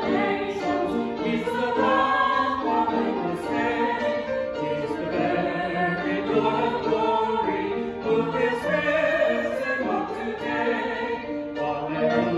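A choir singing sacred music, several voices in harmony without a break.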